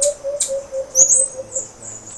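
Birds calling: a steady low note held for about a second and a half, with a thin, high note rising in about a second in and holding on.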